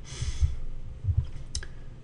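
A few soft clicks and low knocks from a computer mouse and keyboard being handled at a desk, with one sharper click about a second and a half in, after a short breath-like hiss at the start.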